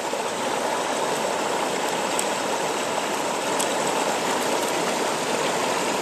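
Running creek water: a steady, even rush with no rhythm, with two faint ticks near the middle.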